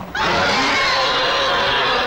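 Loud, harsh dinosaur screaming sound effect from an animated fight, starting just after the beginning and running without break until just before the end.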